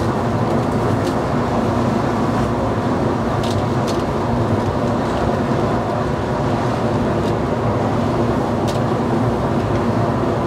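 Steady droning rumble of a ship's engines and machinery, with wind and water noise, and a few faint ticks partway through.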